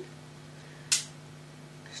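A single sharp click about a second in: a spring-loaded blood lancing device firing as it pricks the edge of a dog's ear to draw a drop of blood for a glucose reading. A faint steady low hum lies underneath.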